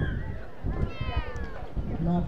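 A single high-pitched voice call, falling in pitch, about a second in, over a low rumble.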